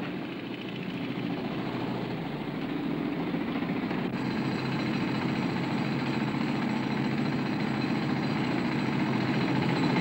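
Construction din under a house's foundations: a dense, steady, rattling machine noise that grows gradually louder.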